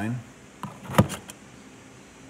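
A sharp click about a second in, followed by a few lighter clicks, as the Tesla charging connector is handled at the Model 3's open charge port.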